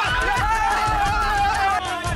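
A song: a voice singing long, wavering notes over a quick, steady drum beat.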